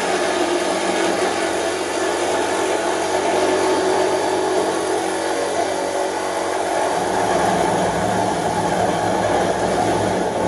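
Reciprocating saw (Sawzall) cutting through the sheet steel of a 1971 Ford F100 cab roof, a continuous buzzing rasp of the blade. About seven seconds in the sound gets deeper and heavier.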